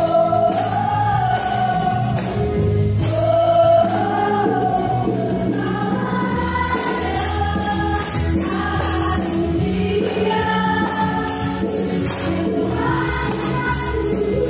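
Yamaha stage piano played with both hands, accompanying a group of voices singing a gospel worship song melody.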